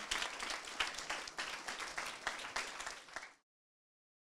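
Audience applauding, the clapping thinning and fading before it cuts off a little over three seconds in.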